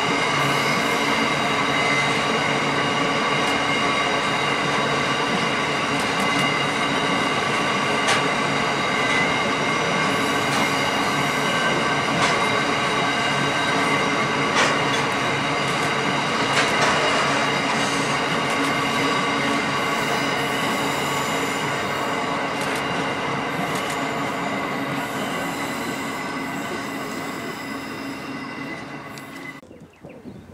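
Coal train's hopper wagons rolling past, with wheel squeal heard as several steady high ringing tones over the rumble and a few sharp clacks. The sound fades over the last several seconds and cuts off just before the end.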